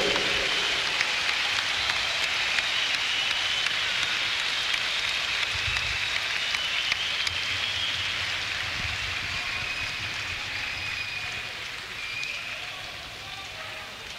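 Concert crowd on an audience tape applauding, with shrill whistles above the clapping, gradually dying down.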